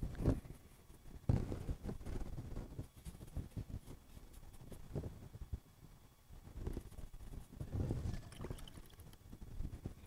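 Soft, irregular knocks and taps of painting tools and a palette being handled on a work table as a color is mixed.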